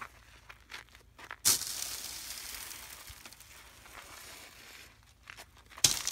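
Dust being handled and thrown at a car: faint rustling, with two sharp rustling bursts, each followed by a brief hiss. The first comes about a second and a half in, and the louder second just before the end, as a handful of dust is flung.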